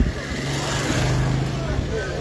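Motorcycle engine running at low speed as it rides slowly past close by: a steady low hum, with voices in the background.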